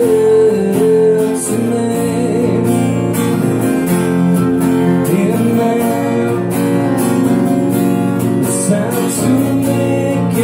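Live music: a strummed acoustic guitar with an electric guitar playing lead lines over it, sounding steadily with no break.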